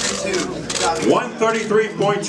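Speech: an announcer calling out a fighter's weight, with other voices beneath.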